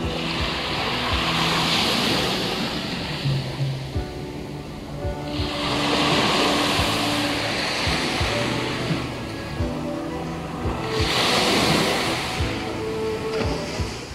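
Small waves breaking and washing up a sandy shore, three surges of surf about five seconds apart, heard under background music.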